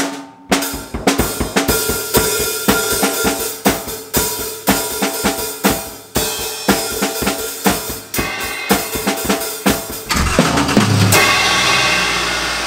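Acoustic drum kit played hard: fast, busy strokes on the bass drum, snare, toms and cymbals. Near the end the drumming stops and a steadier, lower sound takes over.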